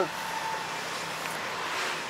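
Steady roadside traffic noise from passing cars and motorbikes, with a vehicle passing close near the end.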